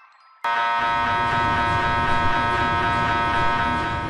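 MRI scanner's gradient coils running a functional (fMRI) scan sequence. A loud, steady electronic buzz with a rapid pulse starts abruptly about half a second in.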